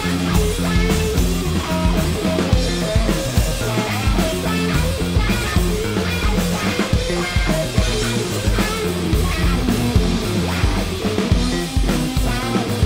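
Live rock band playing an instrumental passage without vocals: distorted electric guitars, electric bass and a drum kit keeping a steady beat.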